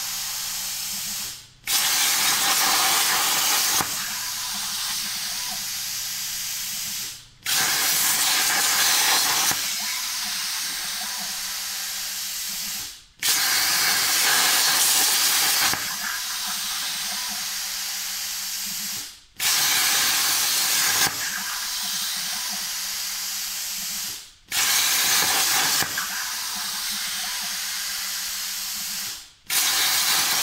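CNC plasma cutter torch hissing as it cuts metal sheet. The arc cuts out briefly about every five to six seconds as each small shape is finished. Each restart begins with a louder stretch of about two seconds before settling to a quieter, steady cutting hiss.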